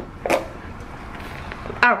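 Plastic pie cups with clear plastic lids being picked up and handled: one short crinkle or clack about a third of a second in, then low handling noise, with a spoken 'Alright' at the end.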